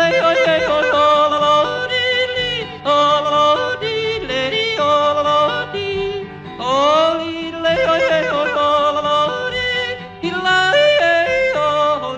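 Male cowboy yodeler yodeling without words, his voice breaking quickly back and forth between low and high notes, over instrumental backing. The yodel phrase comes round twice, each time opening with a rising swoop.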